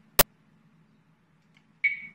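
A single sharp click about a fifth of a second in, over a faint steady low hum.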